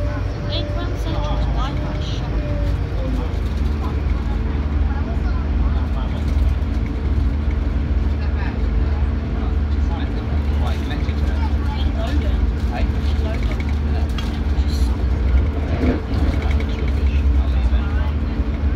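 Inside the carriage of a moving diesel passenger train: a steady low rumble from the engines and wheels on the track, with a steady hum that shifts to a lower pitch about three seconds in.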